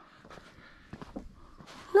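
Mostly quiet outdoor background with a few faint clicks and a brief faint vocal sound about a second in; a voice starts speaking at the very end.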